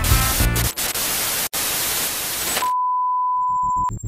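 Television static sound effect: an even hiss for about two seconds, broken by a brief dropout in the middle, then a single steady beep tone held for about a second that cuts off with a click.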